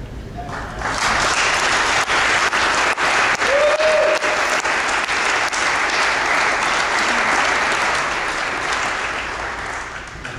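Congregation applauding, swelling about a second in and tapering off near the end.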